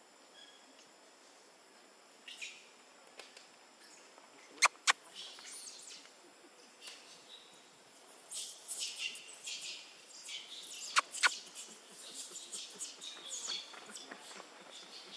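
Forest birds chirping and calling, sparse at first and busier in the second half. Two pairs of sharp clicks stand out above them, one about four and a half seconds in and one about eleven seconds in.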